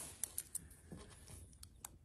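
Faint, scattered clicks and light taps of a steel tape measure being handled, its blade pulled out and its hook set against a metal bar.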